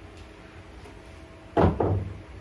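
Two fired stoneware vases set down on a hard surface: two sharp knocks about a quarter second apart near the end, after a low steady hum.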